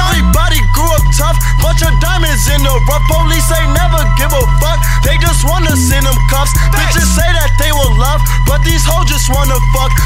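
Trap music: deep 808 bass notes changing pitch every second or so, fast hi-hats and a rapped vocal over the beat.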